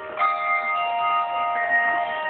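Handbell choir ringing: a fresh chord of brass handbells struck together about a quarter second in, several bell tones at different pitches ringing on and overlapping, with another, higher bell joining about three-quarters of the way through.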